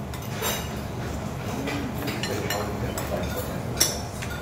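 Light clinks and clicks of a metal spoon and cutlery against dishes over a low restaurant background of faint voices, the sharpest clink just before the end.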